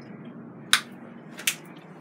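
Two short, sharp clicks about three-quarters of a second apart over faint kitchen room tone.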